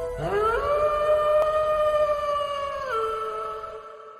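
A wolf-howl sound effect: one long howl that swoops up at the start, holds its pitch, drops a little about three seconds in and fades out near the end.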